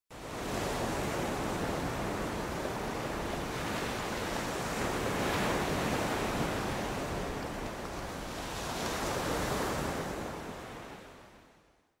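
Ocean surf washing in a steady rush that swells a couple of times and fades out near the end.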